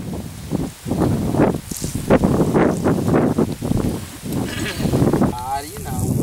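People talking, the words not made out, with a short wavering call a little before the end.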